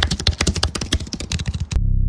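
A rapid, dense run of clicks, like fast typing, which stops near the end as a low, steady humming tone with overtones begins.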